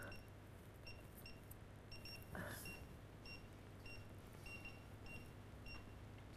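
Card payment terminal keypad giving short, faint, high beeps at uneven intervals, about a dozen in all, as the PIN is keyed in and the payment is processed.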